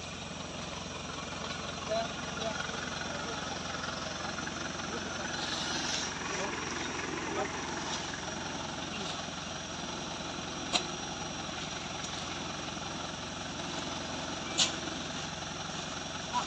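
Off-road pickup truck's engine idling steadily, with faint voices in the background and two short sharp clicks late on.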